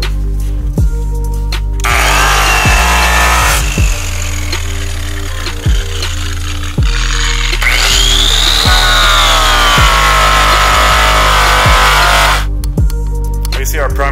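Hip-hop style music with a steady beat, over which a 6,000 RPM rotary buffer with a quick-cut pad runs against an aluminium panel from about two seconds in until near the end. The buffer's whine rises and falls in pitch as the pad is pressed and passes are made.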